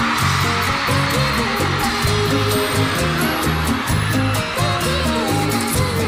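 Live bachata band playing without vocals, with a steady repeating bass pattern, short melodic notes and even high percussion ticks, under a steady wash of crowd cheering in a large arena that is strongest at the start.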